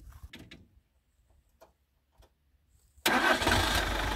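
Near silence with a few faint clicks, then about three seconds in a motorhome's engine starts up and runs loudly. Its starting battery is flat and it is being started off a portable jump starter clipped to the battery.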